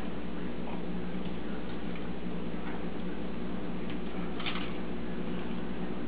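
Faint scattered ticks and clicks of an African grey parrot's beak working at a toy on its playstand, with a louder cluster of clicks about four and a half seconds in, over a steady low hum.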